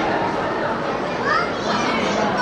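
Crowd chatter of girls' and adults' voices overlapping, with a couple of high rising calls or squeals near the end.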